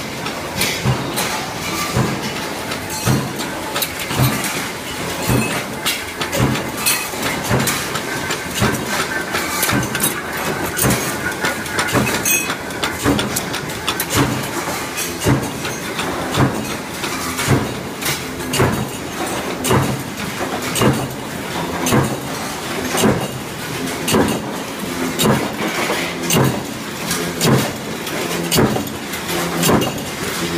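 Sheet-metal factory machinery running, with mechanical punch presses stamping: sharp metal strikes about one or two a second, overlapping, over a steady machine din.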